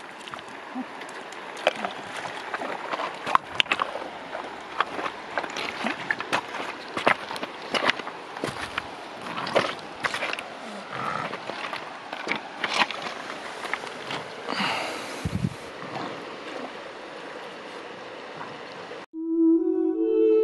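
Shallow creek water running over stones, with many small sharp splashes and clicks. Near the end it cuts off suddenly and calm music with steady held tones begins.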